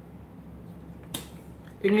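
A single sharp click a little over a second in, over quiet room tone.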